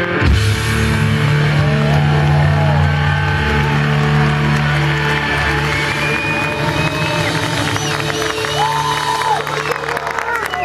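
Rock band's closing chord struck with a drum and cymbal hit, the electric guitars and bass then left ringing on a held chord. The crowd whistles and shouts over it, with a couple of long whistles in the second half.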